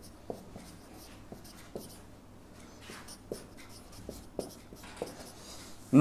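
Marker pen writing on a whiteboard: faint scratching strokes with small irregular taps as the tip meets the board.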